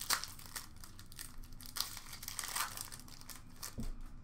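A hockey card pack's wrapper being torn open and crinkled in the hands: a string of short, irregular crackles. The wrapper shreds into strips as it tears, and the breaker calls these packs horrible to open.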